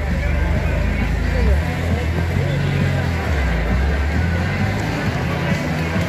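Engine of a black Maserati Biturbo-series coupe running low as the car drives slowly past, over crowd chatter and music.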